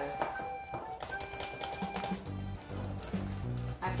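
Wire whisk beating thick batter in a glass bowl: a rapid run of light clicks against the glass. Background music plays under it, with a bass line coming in a little after two seconds.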